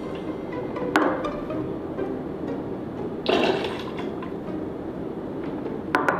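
Whiskey poured from a metal jigger into a stainless steel cocktail shaker, with a sharp clink of metal on metal about a second in, a short pour a little after three seconds, and another clink at the end as the jigger is set down. Background music plays throughout.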